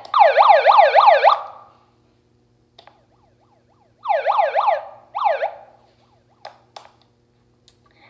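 Handheld megaphone's built-in siren in short bursts of fast rising-and-falling yelps, about four sweeps a second. One burst lasts about a second and a half, a shorter one comes about four seconds in, and a single sweep follows, then a few short clicks near the end.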